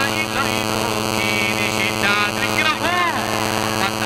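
A man preaching into a public-address microphone, his voice carried over a loud, steady electrical hum with many overtones. About three seconds in, his voice draws out into long rising and falling pitch sweeps.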